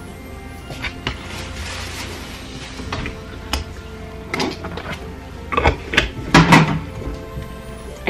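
Background music, with a short cluster of knocks and thuds from kitchen cupboards about two thirds of the way in.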